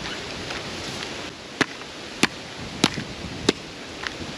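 Machete chopping into a coconut braced against a palm trunk, four sharp strikes about 0.6 s apart in the second half, as the nut is hacked open.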